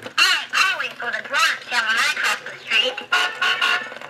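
Mattel See 'N Say Safe 'N Sound talking toy playing its recorded voice message after its lever is pulled: a thin, lo-fi voice whose pitch wobbles throughout.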